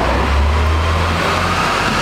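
City street traffic: a passing motor vehicle, its low engine rumble strong for about a second and a half, then easing, under a steady wash of road noise.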